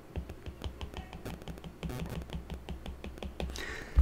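A quick run of light taps from a stylus on a tablet screen as a dashed curve is drawn dash by dash.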